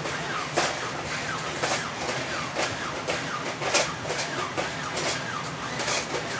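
Robosapien RS Media toy robots walking: gear motors whirring in rising and falling pitch, with irregular plastic clicks and taps from their moving feet and joints.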